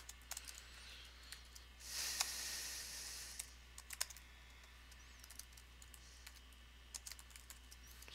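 Faint, irregular key clicks of typing on a computer keyboard, with a short hiss about two seconds in and a low steady hum underneath.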